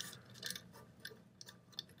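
A few faint metallic clicks as the small coil-spring buffer at the back of a Daewoo K1A1 carbine's receiver is pressed in and let out by thumb.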